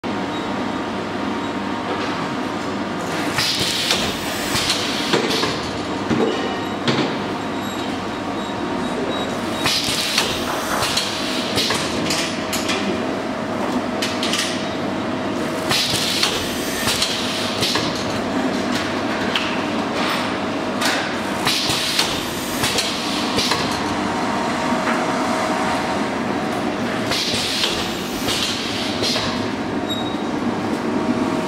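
Automatic L-sealing shrink wrapping machine running: a steady mechanical hum with a faint steady tone and light clicking, broken about every six seconds by a louder clattering, hissing burst as each sealing cycle works.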